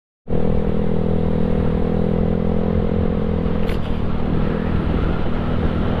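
Yamaha Mio Sporty scooter's single-cylinder four-stroke engine running at a steady cruising speed under way, with wind and road rush. The higher part of the engine note drops away a little past halfway, with a brief faint click.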